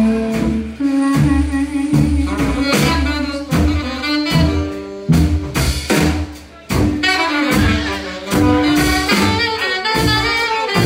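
A live band playing, with a horn section of saxophone and trumpet over drum kit, bass and keyboard, with steady drum hits. About two-thirds of the way through, the band drops out briefly, then comes back in on a strong hit.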